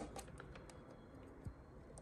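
Faint small clicks and taps of a plastic wiring connector being worked loose by hand, with a soft knock about one and a half seconds in.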